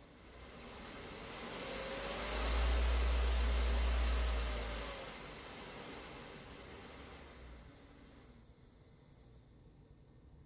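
Three-phase electric motor driven by a variable frequency drive, running with nothing on its shaft as the speed knob is turned up and back down: a whine and rush of air that build, a deep hum and a rising then falling tone at top speed in the middle, then winding down and fading near the end.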